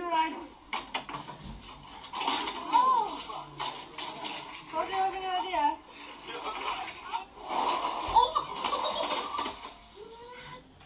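Voices of several people in amateur video clips playing back, over background noise, with a few sharp knocks about a second in.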